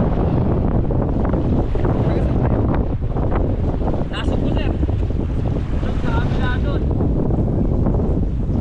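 Strong wind buffeting the microphone over small waves washing up the beach around the boat, with a brief faint voice a little after the middle.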